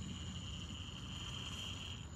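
Faint, steady high whine from an MOA rock crawler's electric motors as it creeps straight up a vertical rock face under slow throttle.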